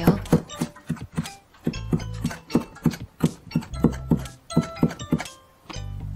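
Light background music over a knife repeatedly tapping a plastic cutting board as garlic cloves are sliced thin.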